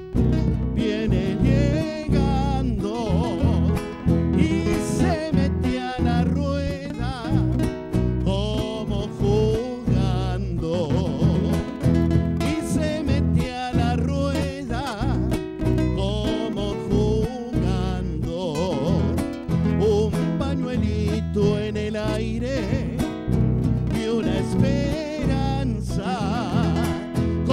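Live band music: nylon-string acoustic guitars strummed in a steady rhythm over an electric bass line.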